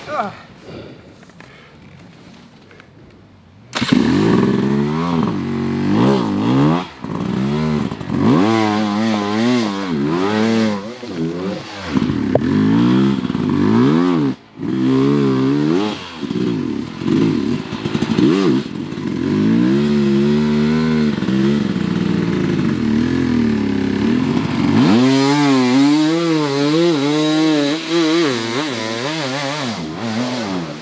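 Dirt bike engine revving hard in repeated bursts, its pitch rising and falling again and again, starting suddenly about four seconds in. The pattern changes slightly near the end.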